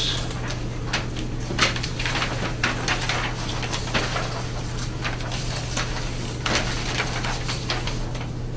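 Paper sheets rustling and crackling as copies are handed out and laid across a table of large survey maps. The sound comes in short, irregular handling noises over a steady low hum.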